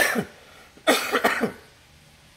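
A man coughing twice, about a second apart.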